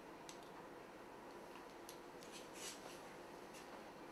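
Faint, steady room hum with a few soft, short clicks and rustles from a curling tong being worked in the hair, its clamp and the hair sliding through it. The fullest rustle comes a little past halfway.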